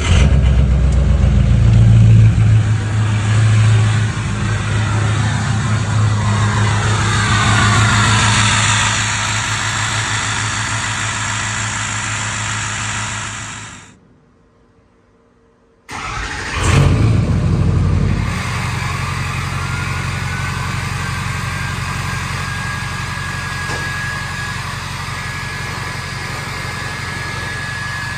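Ford 6.0 L Power Stroke V8 turbo-diesel cold-starting twice, with a short silence between: each time it catches and settles into a fast idle. Its 10-blade turbo, swapped in from a 2003 F-250, whistles over the idle; on the second start the whistle rises and then holds one steady high tone. The first start is without the exhaust tip.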